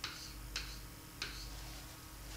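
Pen tip tapping on a writing board while writing: three short, faint clicks about half a second apart.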